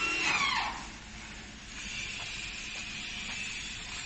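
Electric hand drill working on the car wash's steel frame. A high whine rises and falls in pitch during the first second, then settles into a steady high whine from about two seconds in.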